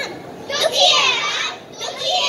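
Children's voices calling out loudly without clear words: a long, high, wavering call from about half a second in, and another beginning near the end.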